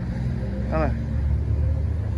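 Low, steady rumble of an idling engine, with a short spoken remark about a second in.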